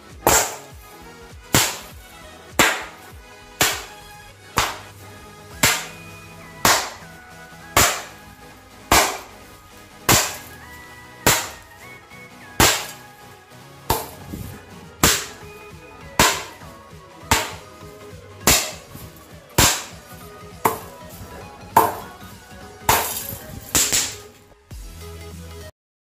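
Snap pops (bang snaps) going off in sharp crackling bursts as they are punched, about one burst a second at slightly uneven spacing, each dying away quickly.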